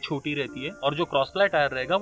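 Speech only: a man talking, mid-explanation.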